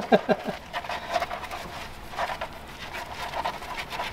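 Three-week-old Boston terrier puppies nursing from their mother. A few short pitched whimpers come in the first half second, followed by faint, steady suckling and jostling noises.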